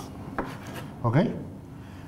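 Kitchen knife cutting raw fish into cubes on a plastic cutting board, the blade rubbing through the flesh, with one sharp knock of the knife on the board about half a second in.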